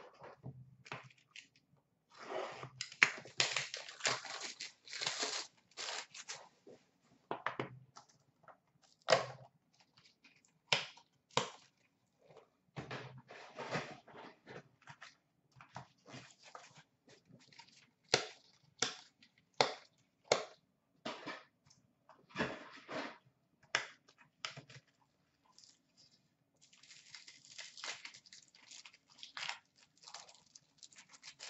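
Hockey card packs torn open by hand: bursts of tearing and crinkling packaging, with many short rustles and taps as the cardboard and cards are handled. The longest stretches of tearing come a couple of seconds in and again near the end.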